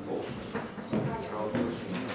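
Speech: a voice talking quietly in short phrases.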